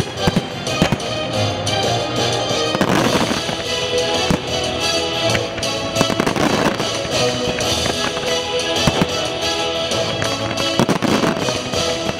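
Aerial fireworks bursting in sharp bangs at irregular intervals over loud orchestral show music.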